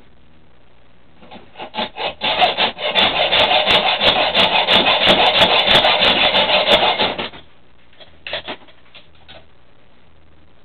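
A hand hacksaw sawing through a steel bicycle cable lock. A few tentative strokes give way to about five seconds of fast, steady sawing that stops suddenly as the cable is cut through.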